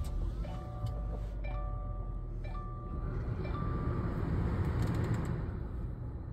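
Two-note warning chime in a 2018 Subaru Forester XT's cabin, sounding about once a second four times, over the car's 2.0-litre turbocharged flat-four engine, heard just after start-up. The engine runs with a steady low rumble that swells for a couple of seconds near the end.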